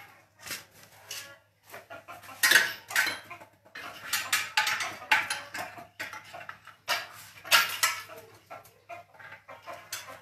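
Metal hand tools and sockets clinking and clattering in irregular runs of sharp strikes, during work on a small motorcycle.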